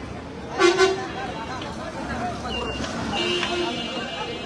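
A vehicle horn gives a quick double toot about half a second in, the loudest sound here, then a shorter, weaker toot about three seconds in, over street noise and voices.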